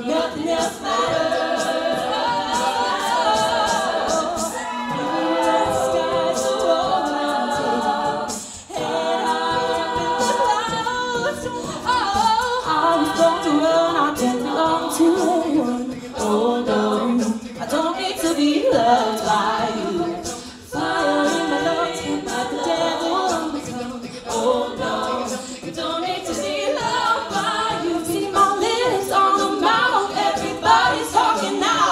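A cappella ensemble singing: lead voices over a layered sung backing, with a steady tick of vocal percussion. The sound briefly thins out twice, near 9 s and again near 21 s.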